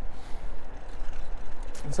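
Wind buffeting a lavalier microphone with a furry windscreen on a moving bicycle: a steady low rumble with a hiss on top, rising and falling in quick gusts.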